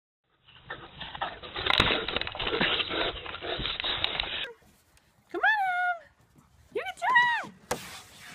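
Loud rustling and knocking on the microphone for about four seconds as the camera is jostled, then two short high-pitched cries about a second apart, each rising and then falling in pitch.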